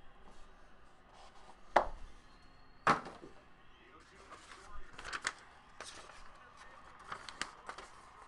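Trading cards and their cardboard box being handled on a tabletop: two sharp knocks about a second apart, then a run of lighter clicks and handling noises.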